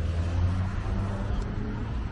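Steady low outdoor background rumble with a faint hum, with no distinct event.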